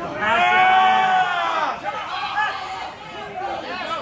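A person's long, drawn-out yell lasting about a second and a half, its pitch rising slightly and then falling away, followed by scattered shorter shouts and chatter.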